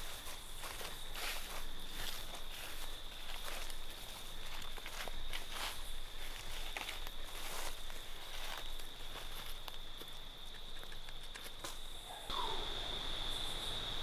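Footsteps crunching through leaf litter and brush on the forest floor, irregular and close. Behind them runs a steady, high-pitched insect trill that grows louder near the end.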